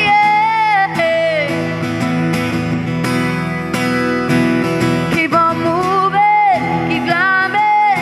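Female singing, with long held and gliding notes, over steadily strummed acoustic guitar.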